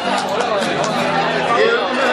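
Voices talking and chattering over the strumming of acoustic guitars, between sung verses.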